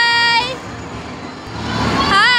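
Electronic tune from a kiddie train ride: a held, high, buzzy note that opens with a swoop and cuts off about half a second in. After it comes a jumble of background noise that swells near the end.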